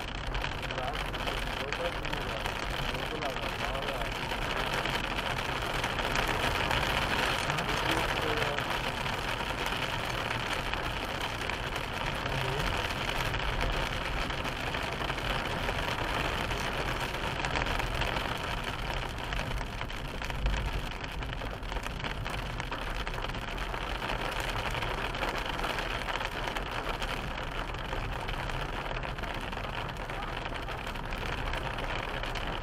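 Steady road and tyre noise from a car driving on a wet, rain-soaked road, heard from inside the car with the engine's low hum beneath it. A single short low thump comes about two-thirds of the way through.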